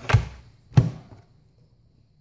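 Kobalt 80V battery pack sliding onto its charger and seating, with two hard plastic knocks about two-thirds of a second apart.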